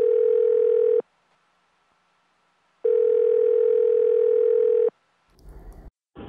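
Telephone ringback tone heard down a phone line as a call goes through: a steady mid-pitched beep of about a second, then after a pause of nearly two seconds a second beep of about two seconds.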